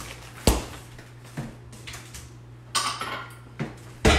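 Off-camera kitchen handling noises: a sharp knock about half a second in, a couple of lighter clicks, a short rustle near three seconds and another knock at the very end, over a steady low hum.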